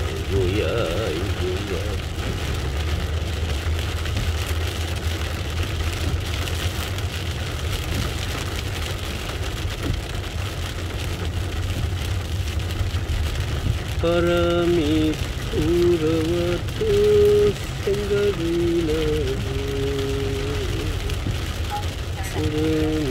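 Heavy rain beating on a moving taxi, heard from inside the cabin, over the steady low rumble of the engine and tyres on the wet road. About fourteen seconds in, a melody of held notes starts and runs on.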